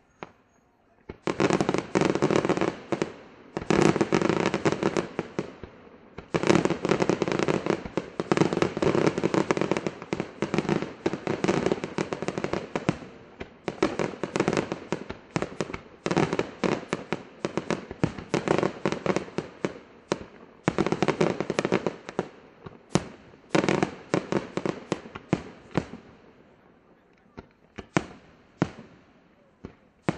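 Aerial fireworks display: rapid volleys of shell bursts and bangs in dense clusters, with brief lulls, thinning to scattered single bangs near the end.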